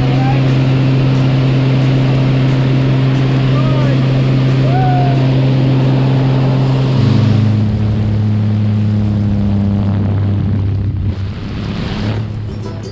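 Single-engine propeller plane's engine and propeller droning steadily inside the cabin. About seven seconds in, the pitch steps down as the engine is throttled back.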